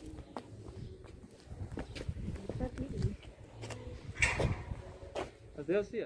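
Quiet outdoor street sound with faint voices of people talking at a distance and a low rumble on the microphone.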